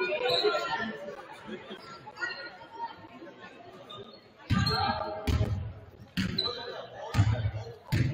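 A basketball being dribbled on a hardwood gym floor, starting about halfway through with a deep bounce roughly once a second, echoing in the gym. Indistinct voices carry through the hall before the dribbling begins.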